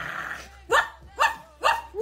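A short hiss-like burst, then a small dog barking four times in quick, evenly spaced yaps.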